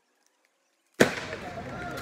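Near silence, then about a second in the sound of a busy concrete skatepark cuts in with a sharp crack. Skateboard wheels rattle and boards clack on the smooth concrete, with voices of the crowd among them.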